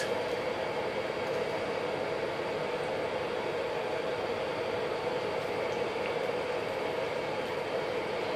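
Steady background hiss with a faint hum, unchanging throughout, with no distinct knocks or handling sounds.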